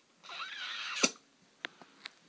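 A faint breathy hiss, then a single sharp click about a second in, followed by a few faint ticks.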